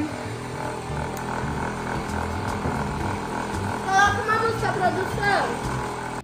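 Small electric cotton candy machine running, a steady whirring drone from its spinning head.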